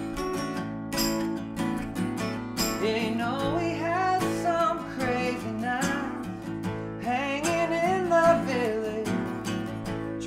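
Two acoustic guitars strumming a song together, with a man's voice coming in singing about three seconds in.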